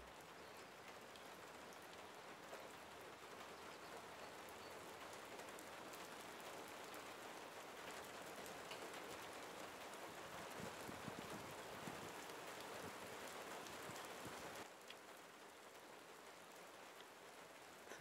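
Faint, steady rain falling, with occasional drop taps. The rain sound cuts off suddenly about three-quarters of the way through, leaving a quieter hiss.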